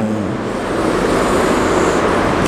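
Chalk drawing a long curved line on a chalkboard: a steady scraping that runs about two seconds.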